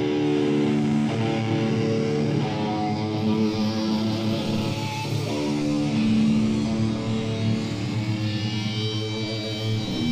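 Heavy metal band playing live, opening a song with slow, held electric guitar chords that change every second or two.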